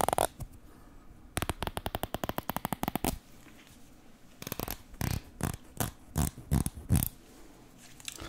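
Teeth of a comb flicked close to the microphone, giving rapid trains of crisp clicks, one right at the start and a longer run in the first half. In the second half comes a series of irregular, heavier handling sounds.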